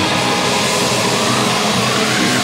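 A steady wall of distorted noise within a heavy metal track, the bass and drums dropping out as it begins.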